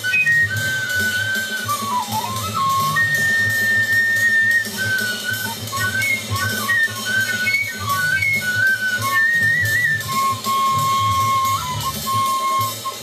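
Native Philippine bamboo flute improvising free, avant-garde phrases over a jazz record with bass and drums. A long high held note comes about three seconds in, then a run of short quick notes, and a lower held note near the end.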